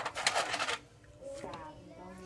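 A short burst of rustling and scuffing in the first second, then a brief faint voice.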